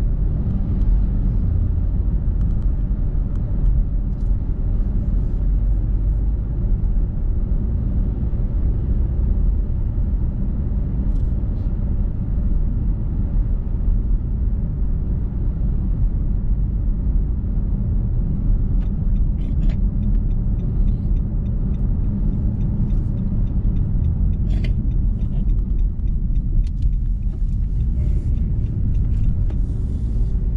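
Steady low rumble of a car driving along a road, engine and tyre noise heard from inside the car, with faint clicks in the second half.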